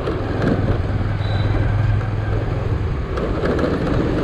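Motorcycle engine running while the bike is ridden through street traffic, heard from the bike itself, with road and wind noise. The low engine hum is steady and eases a little in the second half.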